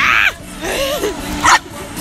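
A dog barking twice in play, two short sharp barks about a second and a half apart, over background music.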